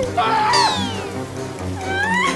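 Background music with cartoon sound effects: a short, wavering, cry-like vocal sound and a whistle-like glide falling steeply in pitch, starting about half a second in.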